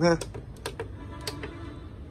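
A few scattered sharp clicks of a finger pressing the plastic control buttons on a Tescom TIH303 induction cooktop. The buttons give no response because the cooktop's key lock is on.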